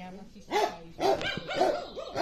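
Puppy barking: four short barks about half a second apart.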